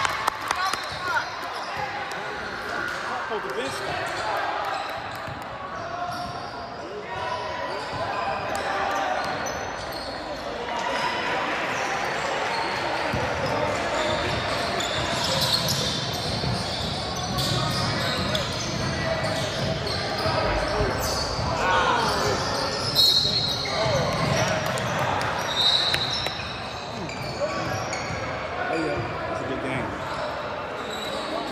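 Basketball game in a large gym: the ball bouncing on the hardwood floor, brief high sneaker squeaks a few times, and players and spectators calling out and talking throughout.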